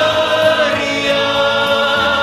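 A song with a choir singing long held notes over musical backing.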